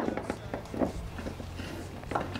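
Soft, irregular scraping and rustling as a heater wire is pushed through a plastic tote and laid into sand by hand.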